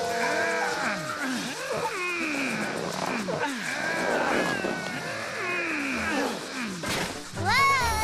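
A cartoon monster's strangled cries, sliding up and down in pitch, with his tongue sucked into a vacuum cleaner hose. They run over music and a steady hiss. A sharp knock comes near the end, followed by a wavering, repeating musical tone.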